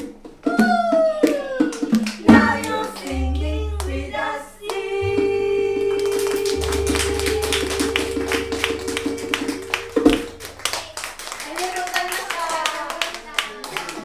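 Small group of women singing, ending the song on one long held note of about five seconds while the audience begins clapping. The note stops with a thump about ten seconds in, and the clapping carries on with a few voices.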